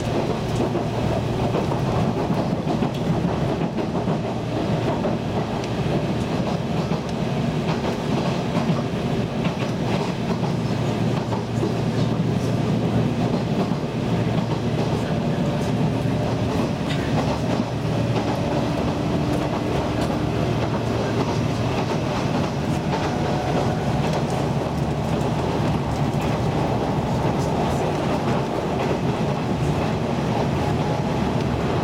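Nishitetsu limited express train heard from inside the passenger car while running: a steady low rumble and rattle of the car, with scattered clicks from the wheels on the rails.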